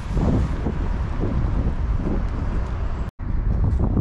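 Wind noise on the microphone over street traffic, broken by a brief dropout about three seconds in.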